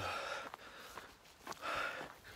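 A man breathing hard close to the microphone: two loud, breathy exhales, one at the start and one near the end, with quieter faint ticks in between.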